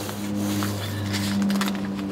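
Gloved hands pressing and rubbing a Grace Vycor Plus self-adhered flashing membrane flat against wall sheathing to work out air bubbles, giving short faint crackles and rubs. A steady low hum runs under it.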